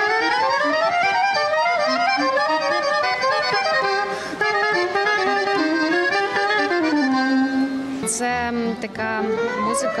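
Accordion and soprano saxophone duo playing a slow jazz melody live, with sustained accordion chords under a line that steps down in pitch midway. A voice comes in right at the end.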